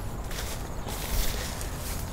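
Footsteps on a wood-chip mulch path, with a light rustle of peach-tree leaves as a branch is brushed aside.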